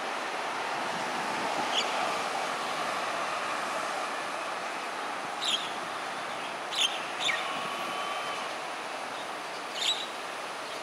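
Mynas giving short, sharp calls, five in all and spread unevenly, over a steady background hum.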